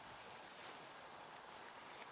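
Faint, steady outdoor background noise, close to silence, with a slight soft bump about two-thirds of a second in.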